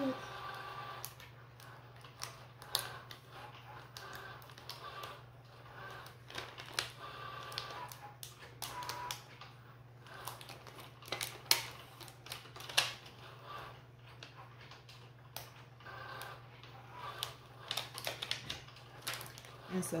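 Irregular crackling and clicking of the clear plastic carrier sheet on heat-transfer vinyl as it is rubbed and peeled off a cotton T-shirt, over a low steady hum.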